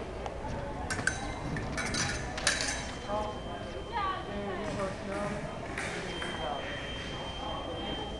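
Fencing blades clashing in a few quick metallic clinks with a high ring, about one to two and a half seconds in. A steady high electronic tone from the scoring machine follows later, signalling a touch.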